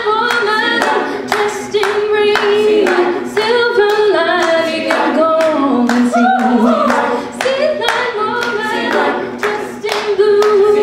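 A cappella vocal group singing live: a female lead voice over layered backing harmonies, with steady hand claps keeping the beat.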